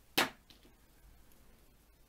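One short snip of scissors cutting crochet yarn, about a fifth of a second in.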